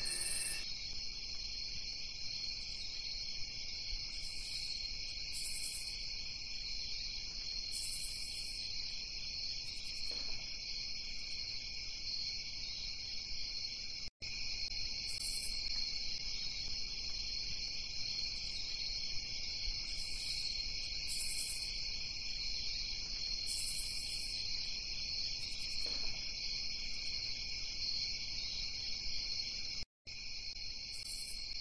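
A steady chorus of insects, of the cricket kind, with short higher-pitched buzzes that come back every few seconds. The sound cuts out for a moment about halfway through.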